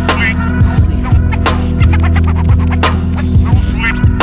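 Hip-hop track between rapped verses: drum hits two to three times a second over a steady bass line, with a short warbling sound about a fifth of a second in.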